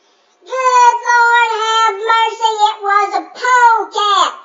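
A high, childlike voice singing or chanting without clear words, in drawn-out notes that are held and slide in pitch, starting about half a second in.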